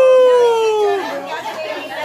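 A person's voice giving one long "woo" cheer that falls slightly in pitch and breaks off about a second in, followed by people chattering.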